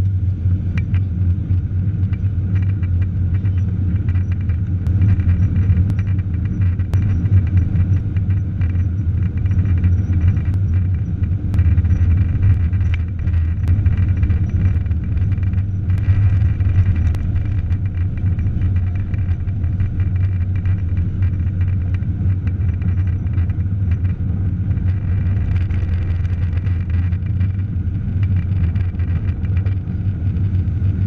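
Boeing 777-300 jet engines and runway rumble heard from inside the cabin during the takeoff roll: a steady, deep rumble with faint small clicks and rattles throughout.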